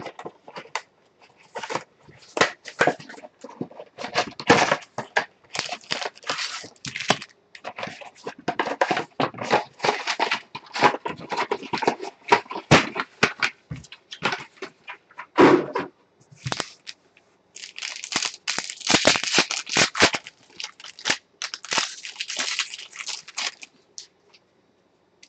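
A cardboard hobby box being opened and foil trading-card packs handled, with irregular crinkling, rustling and tearing of wrapper and cardboard. The crinkling is densest near the end.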